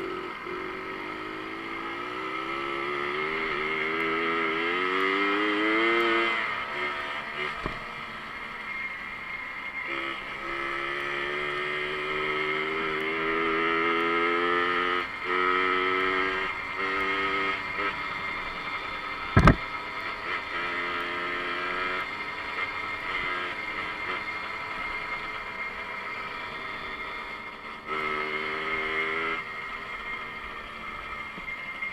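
Small two-stroke moped engine running under way, its pitch climbing as it accelerates over the first six seconds and again from about ten to fifteen seconds in, then holding with dips as the throttle eases. A single sharp knock comes about two-thirds of the way through.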